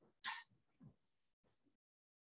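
Near silence, broken once about a quarter second in by a brief breathy vocal noise, like a small throat clearing, followed by a fainter short sound just before the one-second mark.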